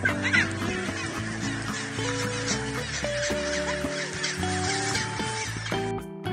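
Gentoo penguins calling, with a steady hiss of background noise, over background music.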